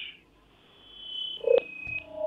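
A few short electronic tones at different pitches, with a couple of sharp clicks, starting about halfway in after a moment of quiet.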